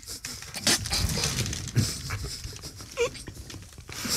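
Stifled laughter from people holding mouthfuls of water: irregular snorts and puffs of breath through the nose, with a brief muffled squeak about three seconds in.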